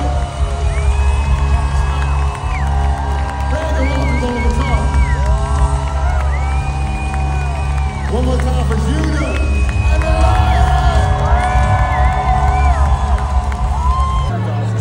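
Live band playing loudly with a heavy, steady bass while the lead singer holds long sung notes, several with vibrato, and the crowd cheers.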